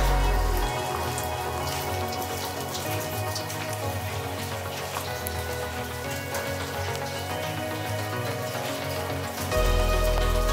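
Rain pattering on a wet street, heard under soft background music whose low bass drops out about a second in and returns near the end.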